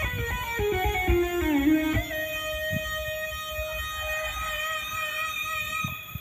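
Dangdut instrumental music played back through a 2.1 active subwoofer speaker box. A melodic line runs down in quick notes over the first two seconds, then settles into held notes over a faint low beat.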